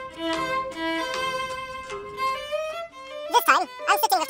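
Background music led by a violin playing slow, held notes; a voice starts speaking near the end.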